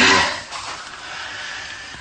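A woman crying: a short, loud voiced sob at the start, then a long breathy exhale.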